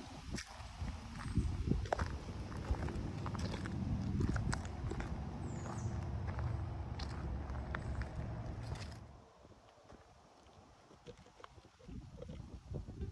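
Footsteps on a rocky dirt trail: irregular crunches and scuffs of stone and grit underfoot over a low rumble. About nine seconds in, the sound drops away to a faint hush.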